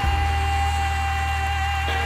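A woman singing one long held note into a microphone over a backing track with a sustained low bass.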